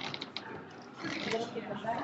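A short run of quick, close clicks in the first half-second, over the murmur of a crowded room.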